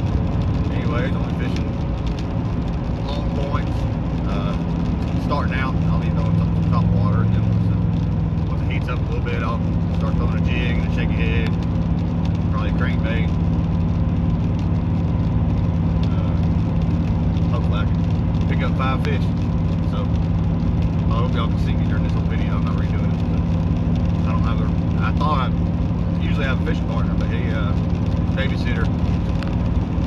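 Vehicle engine and road noise heard inside the cabin while driving: a steady low drone whose note shifts about nine seconds in.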